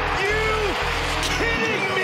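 Loud arena music with a heavy bass that drops out near the end, with drawn-out shouting voices over it as a goal is celebrated.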